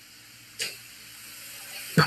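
Microphone handling noise over a low steady hum from a meeting-room sound system: a brief rustle about half a second in and a knock near the end.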